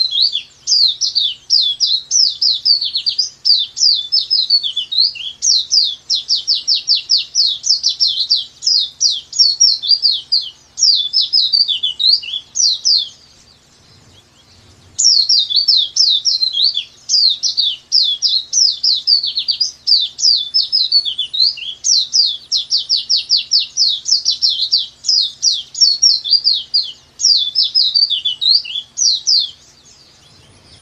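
Pleci (white-eye) singing a long, fast run of high, sharply falling notes without a break for about 13 seconds. After a short pause the same long song starts again and runs almost to the end.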